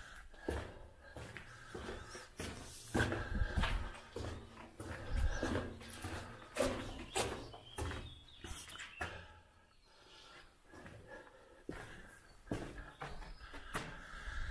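Irregular footsteps and scuffs on a gritty concrete floor strewn with debris, with handling knocks on the handheld camera.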